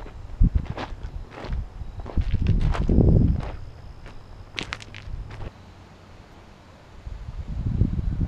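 Irregular footsteps on the gravel ballast of an old railroad bed, with a louder low rumble about three seconds in. The steps die away near six seconds.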